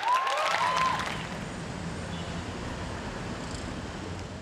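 Theatre audience applauding, with cheers and whistles in the first second, then settling into a steady wash of noise.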